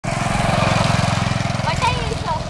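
Small vehicle engine running close by with a rapid, even putter; voices come in briefly near the end.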